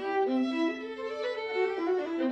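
Violin and viola duo playing classical chamber music: a lower held note under a moving upper line, the notes changing stepwise.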